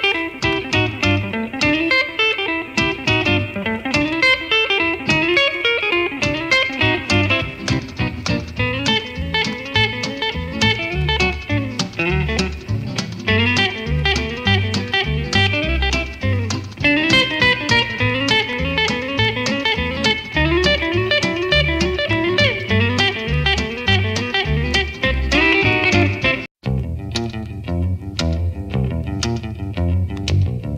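Electric jazz guitar playing fast runs of single notes over low bass notes. About three-quarters of the way through, the music cuts off for an instant and a different guitar tune begins.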